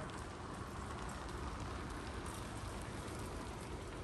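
Steady outdoor background noise: an even hiss with a low rumble underneath, and no distinct event.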